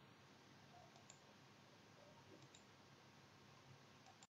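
Near silence: faint room hiss with a few faint clicks.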